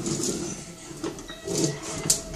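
Plastic toddler push-walker toy rolling and rattling across a tile floor, with a few irregular knocks.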